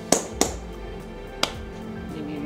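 Three sharp claps from a sushi chef's wet hands as he readies them to shape nigiri: two in quick succession at the start and one more about a second and a half in. Background music plays throughout.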